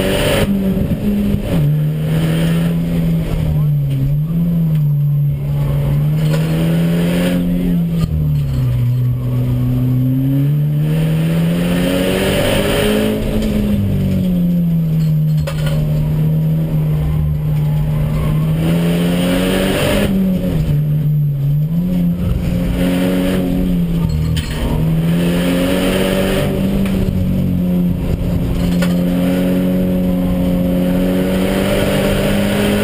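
Audi DTCC touring race car's engine heard from inside the cockpit while lapping a track, its pitch climbing under acceleration and dropping off into corners several times over.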